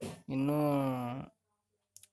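A man's voice holding one long, drawn-out vowel sound for about a second, then a pause.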